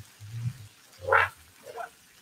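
A person's low, wordless murmur with a short breathy sound about a second in.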